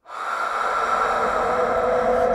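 Cartoon sound effect of a long blown gust of air, a breathy hissing rush that starts suddenly and swells gradually.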